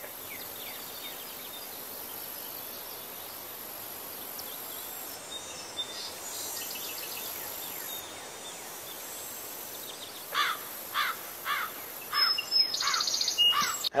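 Outdoor nature ambience: a steady hiss with birds chirping. From about ten seconds in, one bird gives a run of repeated falling notes, roughly two a second.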